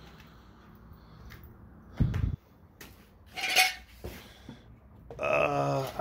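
Rummaging in a metal tool-chest drawer: a heavy thud about two seconds in, then a short clatter and clink of metal tools about a second later. A man's voice starts just before the end.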